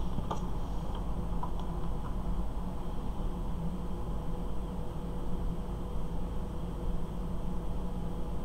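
Steady low background hum with a few faint light clicks in the first two seconds, from a precision screwdriver and tiny screws being handled against small plastic model hinge parts.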